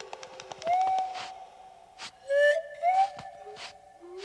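Film-soundtrack whistling: three short rising whistle glides, each settling into a held tone, over a steady background tone, with sharp clicks scattered between them.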